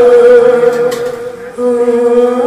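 Odia kirtan music: a long, steady held note with a second, lower note joining about one and a half seconds in.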